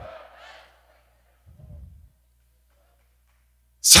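Faint murmur of a congregation saying a phrase to one another in a large hall, dying away within the first second. A brief low rumble follows, then a man's voice starts near the end.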